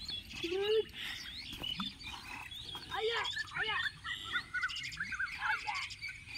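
Birds chirping and calling over and over, several at once, in short rising and falling notes, with bursts of fast trilling.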